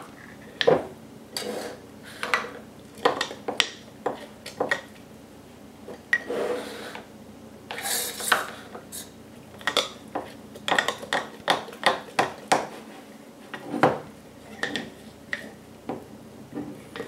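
Metal spoon stirring flour, water and sourdough starter in a glass mason jar, clinking and scraping against the glass in many sharp, irregular clinks.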